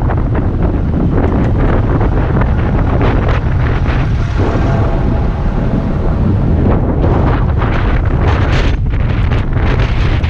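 Wind buffeting a bike-mounted action camera's microphone while riding: a loud, steady low rumble with gusty rustling.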